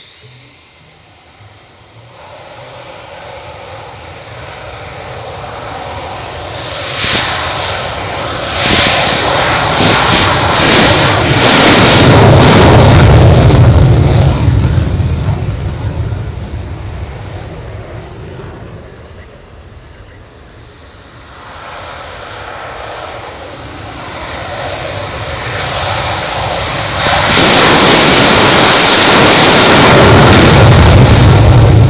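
Two F-16 fighter jets taking off one after the other on afterburner. The first grows steadily louder with a crackle, is loudest about halfway through and then fades. The second builds up and becomes suddenly very loud near the end as its afterburner lights for the takeoff roll.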